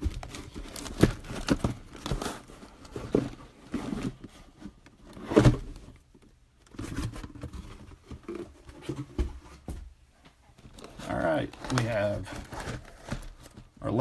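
Cardboard trading-card boxes being handled and set down on a table: scattered knocks, scrapes and rustles of cardboard. A man starts talking in the last few seconds.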